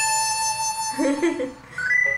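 Variety-show editing sound effects from the episode playing: a held tone that fades out after about a second and a half, a brief voice, then a short two-note rising chime at the end.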